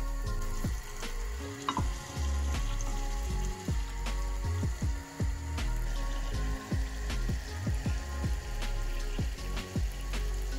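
Flour-dredged chicken breasts sizzling in hot oil in a cast-iron skillet, with frequent short crackles and pops throughout.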